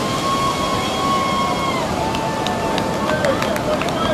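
A long, high held 'woo' cheer from a spectator, lasting about three and a half seconds and dipping slightly in pitch about halfway through, over steady surf and wind noise. A scatter of short sharp clicks comes in during the second half.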